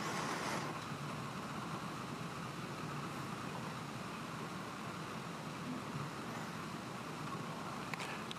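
Steady room tone on a courtroom microphone feed: a low, even hiss with no speech.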